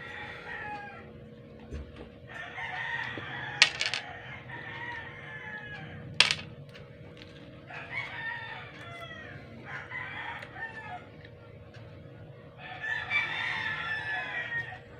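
Roosters crowing, four long calls a few seconds apart, with two sharp clicks in between.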